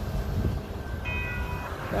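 Low rumble of a freight train of autorack cars rolling away on the track. A faint, steady high tone at several pitches sounds briefly about a second in.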